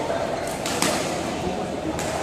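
Badminton rackets striking a shuttlecock: a few sharp smacks between about half a second and a second in, over the steady din and voices of a busy hall.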